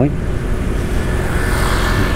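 Steady engine hum and wind rumble from riding a motorbike along a street. Near the end, another motorbike passes close on the left, adding a growing hiss of engine and tyre noise.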